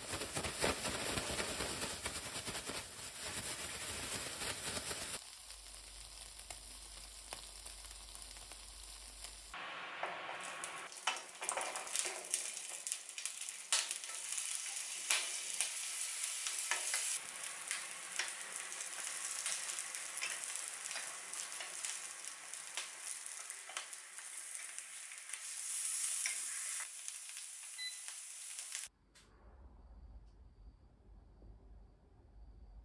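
Salted carrot strips being shaken in a plastic bag, a loud crinkling rustle for the first few seconds. After a quieter stretch with a low hum, shishito peppers and sweet potato slices sizzle in oil in a frying pan as they are turned, a steady hiss with scattered clicks, until the sound cuts off abruptly near the end.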